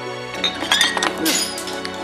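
Background music with a short flurry of sharp clinks about half a second to a second and a half in.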